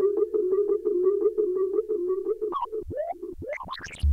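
Eurorack modular synthesizer feedback patch, the sound looping through a Make Noise FXDf fixed filter and Echophon pitch-shifting echo: a sustained mid-pitched drone with rapid, evenly spaced ticking repeats. In the last second and a half it breaks into swooping pitch glides, falling and rising.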